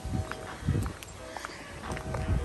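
Footsteps of a person walking on a concrete sidewalk: a few low thuds at walking pace.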